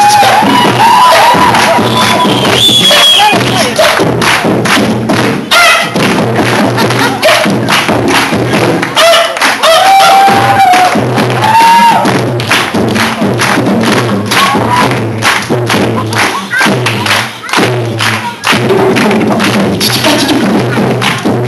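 A beatboxer performing into a microphone: a fast run of drum-like kicks, snares and clicks made with the mouth, with short hummed notes held over the beat near the start and again about halfway through.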